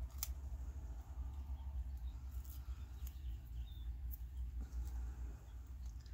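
Faint rustling and small crinkles of a thin paper napkin being picked at and torn by fingers, over a steady low hum.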